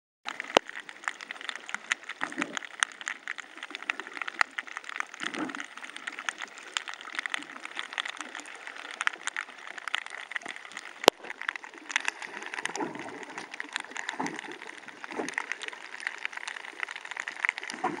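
Water gurgling and sloshing around a camera used while snorkelling, with a constant fine crackle of small clicks. A few short low whooshes come through about 2, 5, 13, 14 and 15 seconds in.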